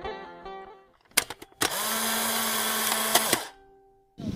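Plucked-string intro music fading out, then a few sharp clicks and a loud buzzing title sound effect with a steady low hum, about two seconds long, cutting off suddenly and leaving a faint fading tone.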